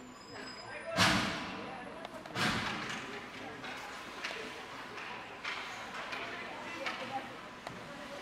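Two loud impacts of hockey puck play, about a second and a half apart, echoing through the ice rink, followed by a few lighter stick-and-puck clacks. Faint spectator voices run underneath.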